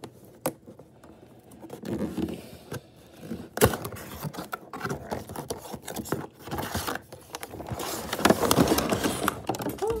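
A cardboard toy box being cut and worked open by hand: a clay knife scraping at packing tape, with cardboard rubbing and rustling. Irregular clicks throughout, a sharp click about three and a half seconds in, and a denser stretch of scraping near the end.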